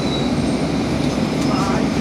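Steady low rumble of a city bus running, heard inside the passenger cabin, with faint voices near the end.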